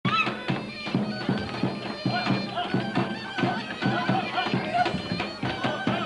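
Bulgarian gaida (bagpipe) playing a fast folk dance tune over its steady drone, with a large tapan drum beating about three strokes a second.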